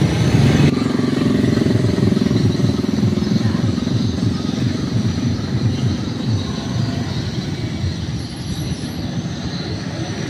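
Motorcycle engines running close by in busy street traffic, with voices in the background.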